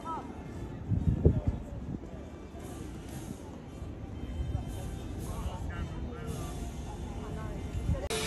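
Faint, indistinct voices of people talking over steady open-air background noise, with a brief low rumble about a second in.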